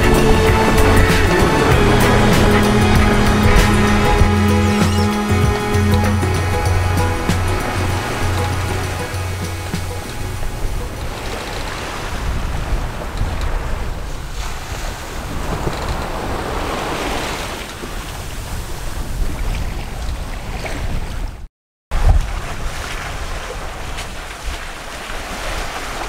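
Background music fading out over roughly the first ten seconds, giving way to the steady rush of wind and waves around a sailboat under sail in rough water. The sound cuts out completely for a moment about 21 seconds in.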